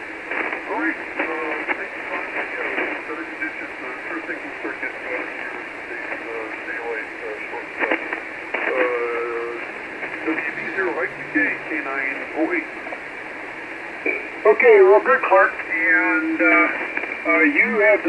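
Single-sideband voice received on the 40-metre amateur band through a transceiver's speaker: narrow, tinny speech under band noise. It is weak at first and much stronger from about three-quarters of the way in.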